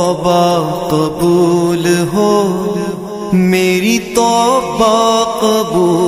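Male voice singing an Urdu devotional naat in long held notes that slide between pitches, with short breaks between phrases.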